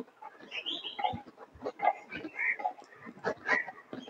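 Birds chirping in short, scattered calls.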